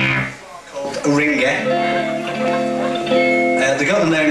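Electric guitar through an amplifier: a chord struck just before the start rings and dies away, then from about a second in held chords ring out.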